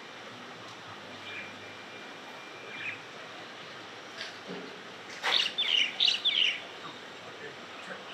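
A bird chirping: a brief run of quick chirps about five seconds in, the loudest thing here, over a faint steady hiss. A thin, faint high whistle is heard earlier, about a second in.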